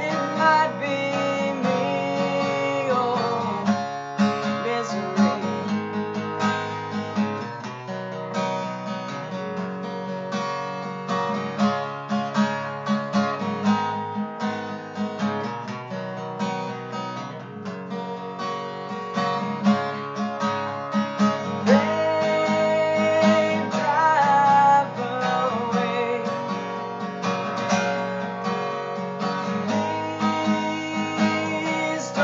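Steel-string acoustic guitar strummed steadily through a chord progression, with a regular rhythm of strokes.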